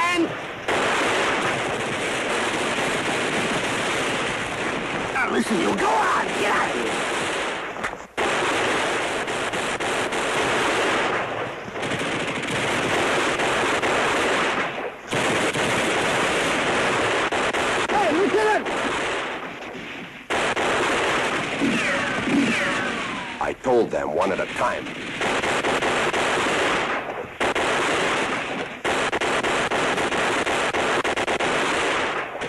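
Machine-gun fire in long, sustained bursts, broken by brief pauses every few seconds, on a 1960s television war-drama soundtrack.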